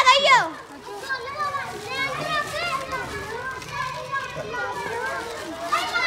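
A crowd of children chattering and calling out, many high voices overlapping. A burst of loud shouts comes at the very start, then a steady babble.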